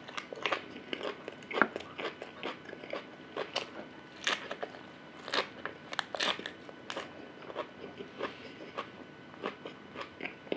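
A man chewing and biting as he gnaws meat off a large beef rib bone: an irregular run of sharp crunches and clicks, a few louder ones in the middle.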